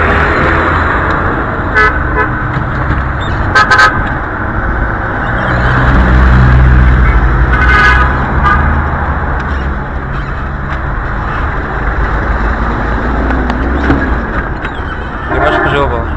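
Street traffic: passing car engines make a continuous low rumble, loudest in the middle. Short car-horn toots sound about two, four and eight seconds in.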